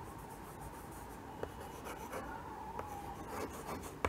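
Chalk writing on a chalkboard: faint scratching strokes with a few short ticks as the chalk meets the board.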